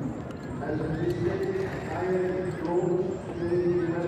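Welsh Cob stallion neighing, with gliding calls about a second in and again near the end, over the voices of people nearby.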